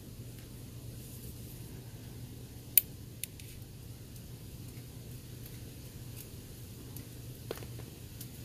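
Vintage hawkbill pocket knife and a steel rule being handled: one sharp metallic click about three seconds in, a lighter tick just after and another near the end, over a low steady hum.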